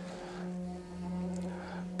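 A water-filled Tibetan singing bowl sustaining a steady ringing hum as a padded wooden striker is rubbed around its rim. The hum holds a low main tone with a few fainter higher tones and dips slightly about the middle. The owner says the bowl is made of meteoric iron.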